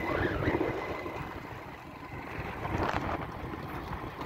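Wind buffeting a phone's microphone: an uneven, gusty low rush of noise that eases about two seconds in and then builds again.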